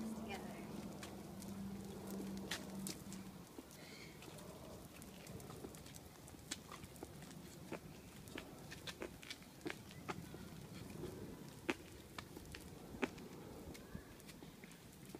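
Irregular sharp clicks and taps of footsteps and small wheels rolling over a concrete sidewalk, with a steady low tone in the first three seconds or so.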